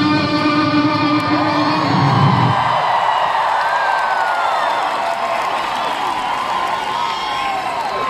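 Rock band's electric guitars and bass ringing on a held chord that cuts off about two and a half seconds in, leaving a crowd cheering and screaming.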